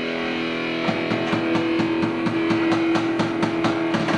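Live rock band with an electric guitar holding one ringing chord. About a second in, a steady beat of about four to five strokes a second joins it.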